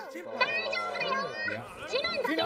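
Speech only: several high-pitched voices talking over one another.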